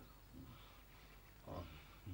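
Near silence: room tone, with one faint, short, low sound about one and a half seconds in.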